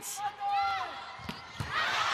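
Volleyball being struck twice in quick succession during a rally, sharp hits a little over a second in, followed by arena crowd noise swelling near the end.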